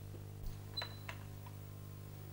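A door being opened: a few soft clicks and knocks from its latch and frame, one with a brief squeak, over a steady low hum.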